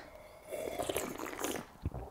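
Someone sipping tea from a wine glass: about a second of soft slurping, then a short low thump near the end.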